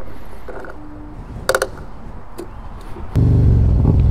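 A few light clicks and a short beep. Then, about three seconds in, a Harley-Davidson Road Glide's V-twin engine comes in suddenly, running loud and steady while the bike is under way, with Stage II cam and 4-inch slip-on mufflers.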